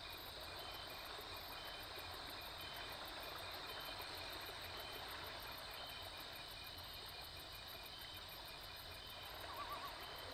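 Faint nature-soundscape backing of insects chirping steadily, with short, regularly spaced chirps about once a second. A brief wavering trill comes near the end.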